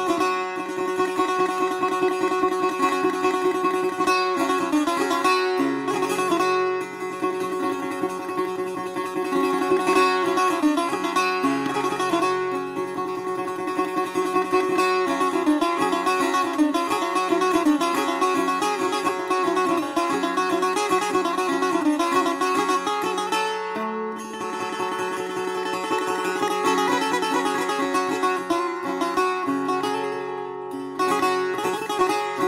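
Persian setar played solo in the traditional style: a stream of rapid plucked notes over steadily ringing strings.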